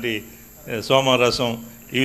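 A man speaking into a handheld microphone in short phrases with pauses, and a faint steady high-pitched whine behind his voice.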